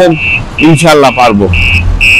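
An electronic beeper sounding in short, high, even beeps, a few each second, with a low engine rumble rising near the end.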